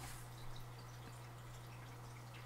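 Quiet room tone: a steady low hum with a few faint small ticks, the clearest about half a second in.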